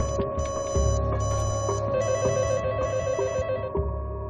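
A phone ringing in repeated short electronic trills, about one a second, over a steady sustained music score; the ringing stops a little over three seconds in while the music carries on.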